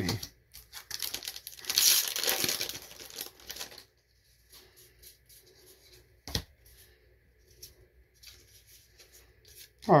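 A foil booster pack wrapper torn and crinkled open for about three seconds. Then quieter handling of the cards, with a single sharp tap a little after the middle.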